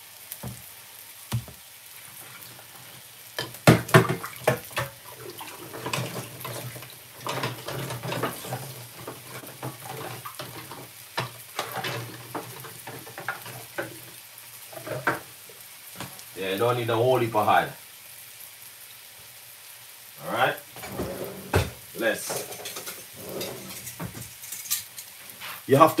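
Flour-dusted salmon pieces frying in a little oil in a nonstick pan: a steady faint sizzle with frequent irregular crackles and pops.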